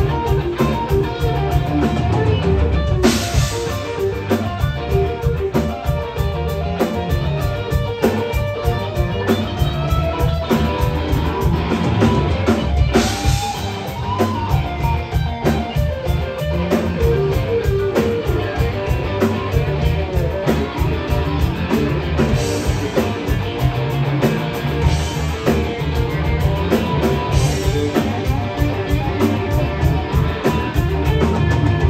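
Rock band playing live: two electric guitars, bass guitar and drum kit, loud and dense, with cymbal crashes every several seconds.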